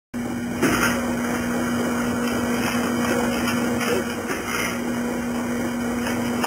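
Thompson Scale TSC-350 checkweigher running on its conveyor: a steady machine hum with a constant low tone, and brief louder rushes every second or so as it works.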